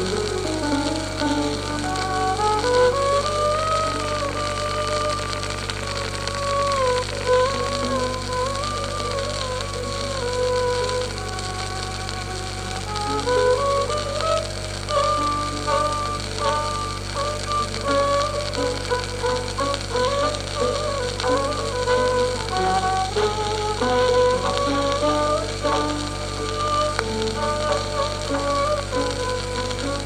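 Hindustani classical instrumental played from a 1940s 78 rpm shellac disc: a violin plays a gliding, ornamented melody over piano and tabla. The disc's steady surface hiss and a low hum run underneath.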